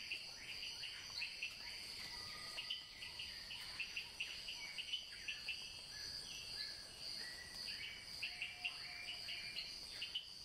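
Faint tropical nature ambience: a steady, high insect trill under many short bird chirps and whistles that come in quick clusters throughout.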